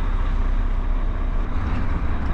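Inside the cab of a Volvo HGV on the move: the diesel engine running and the tyres rolling over cobbles make a steady low rumble.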